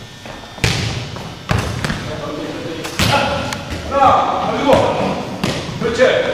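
A foot-volleyball ball being kicked and headed, and bouncing on a hardwood gym floor: a few sharp thuds, about a second apart early on and then one near the middle, each echoing around the hall.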